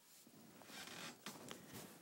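Faint rustling and scraping with a few light clicks, the handling noise of someone moving about close to the microphone.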